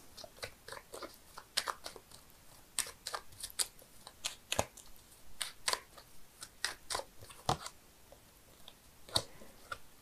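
A deck of tarot cards being shuffled by hand: faint, irregular clicks and soft snaps of card edges, about two a second.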